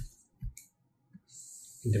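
A few short, sharp clicks in a pause between words, then a soft high hiss just before the voice returns at the end.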